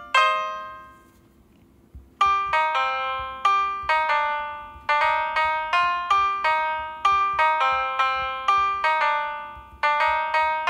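Piano notes from the Perfect Piano touchscreen app, played one at a time as a melody. A note rings out and fades, a near-silent pause follows, and about two seconds in the notes resume at roughly two a second.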